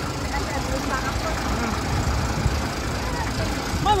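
Steady street traffic: car and truck engines running as vehicles pass on the road, with faint voices of passers-by.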